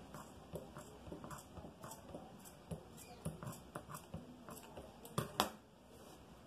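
Scissors snipping through thick cotton cord: a string of faint crunching clicks, with two louder clicks about five seconds in.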